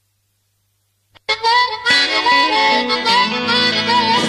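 Silence for about a second, then a blues-rock track starts suddenly with a harmonica playing bent notes.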